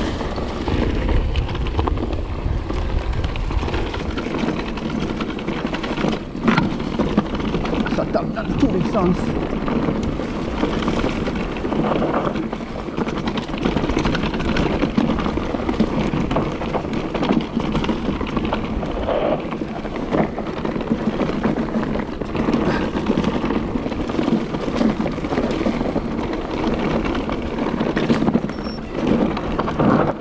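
Electric mountain bike ridden along a rough forest trail: a steady rush of tyres on dirt and wind on the camera microphone, with repeated knocks and rattles of the bike over bumps.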